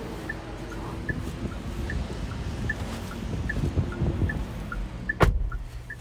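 Chery Tiggo 8's turn-signal indicator ticking inside the cabin: a faint tick-tock alternating between two pitches about every 0.4 s, over a low rumble and handling noise. A single sharp click comes about five seconds in.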